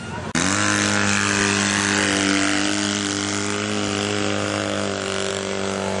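Off-road vehicle engine running at a steady speed, cutting in abruptly a moment in and then holding an even pitch.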